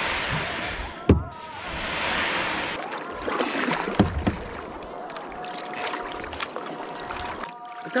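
Kayak paddle splashing through river water in a series of strokes, with one sharp knock about a second in.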